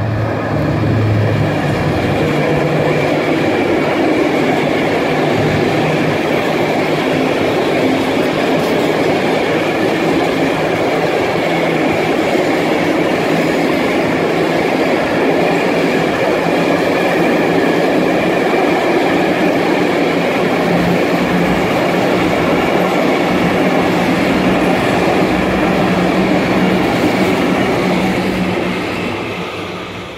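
A diesel-hauled freight train of tank wagons rolling steadily past. The locomotive's engine is heard passing in the first couple of seconds, then the wagons' wheels run on the rails, fading near the end as the last wagons go by.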